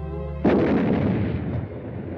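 A cartoon artillery-shell explosion: a held music note is cut off about half a second in by a sudden loud blast, followed by a long rumble that slowly fades.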